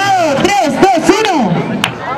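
A man's voice talking loudly, with a single sharp click near the end.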